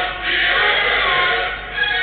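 A group of young voices singing a national anthem together in chorus.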